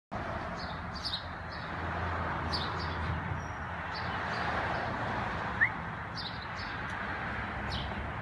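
Small birds chirping: short, high chirps in little clusters every second or so, over a steady background hiss. A single brief, rising squeak stands out about five and a half seconds in.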